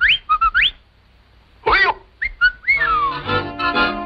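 Cartoon ostrich voice effects: several quick rising whistled chirps, a short honking squawk about halfway, then more chirps ending in a falling whistle glide. Music comes back in for the last second.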